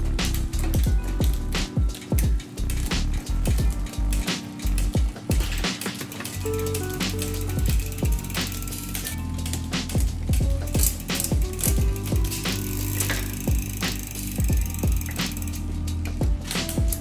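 Background music over the clicking of a mountain bike drivetrain turning on a stand: the SRAM NX Eagle chain running on the 12-speed cassette while the rear derailleur shifts across the gears.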